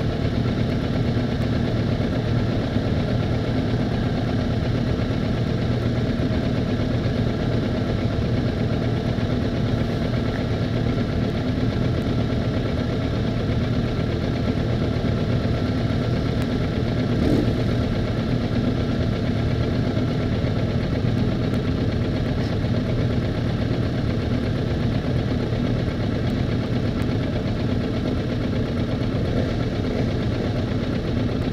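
Motorcycle engines idling steadily in a group of stopped bikes, a continuous even running sound with no revving.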